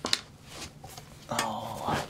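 A single sharp click just after the start, then a short voiced sound from a person, like a brief hum or grunt, about a second and a half in.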